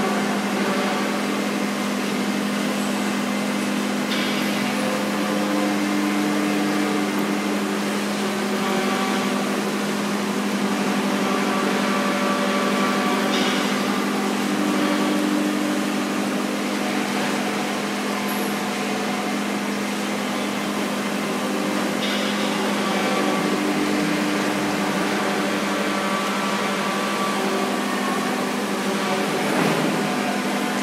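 Small electric injection pump running steadily with a constant hum, pumping grey slurry through its hose.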